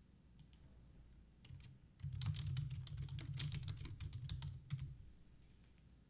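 Typing on a computer keyboard: a quick run of key clicks from about a second and a half in until about five seconds.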